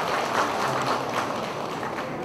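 Audience applauding, the clapping easing off slightly toward the end.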